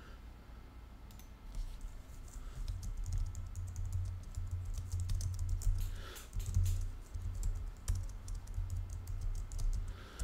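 Typing on a computer keyboard: a quick, uneven run of keystrokes that starts about a second in and keeps going.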